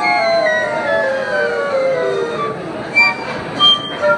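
Flute choir of five concert flutes playing a descending run together in parallel lines, then two short, high, detached notes near the end that close the piece.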